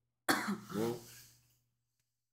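A person's single short cough, starting suddenly about a quarter second in and fading within about a second.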